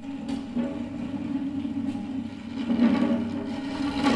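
Acoustic classical guitar, held upside down, its headstock scraped against the floor: a continuous rough scraping with a low hum from the resonating guitar body, swelling about three seconds in and again at the very end.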